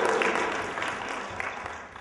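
A group applauding, a dense patter of many hands clapping that dies away over the two seconds.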